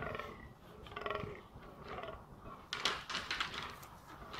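Fallow deer buck groaning, the rutting call, in several short bursts; the loudest comes about three seconds in.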